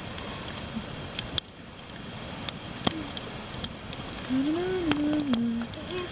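Log fire burning in a steel campfire ring, a steady hiss with scattered sharp pops and crackles. A short hummed voice sound comes about four and a half seconds in.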